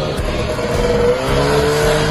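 Two-stroke engine of a 1974 Daihatsu Fellow Max running as the car drives, its pitch rising about halfway through.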